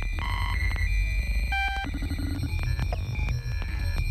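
Live electronic music: a heavy, steady sub-bass throb under short, high synthesized beeps and scattered glitchy clicks.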